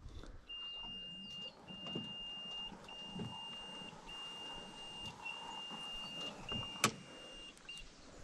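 An electronic beeper sounding a steady high tone again and again, each beep about a second long with a short gap between, with a single sharp click near the end.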